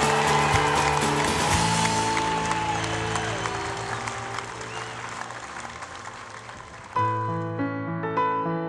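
Applause mixed with background music, fading away gradually. About seven seconds in, a piano melody begins.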